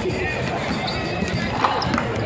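Basketballs bouncing on a hardwood court, scattered knocks with one sharper bang about a second and a half in, over the echoing murmur of talk and music in a large arena.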